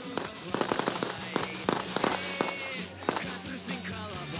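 Several submachine guns firing in quick, irregular shots and short bursts, many cracks overlapping, with background music underneath.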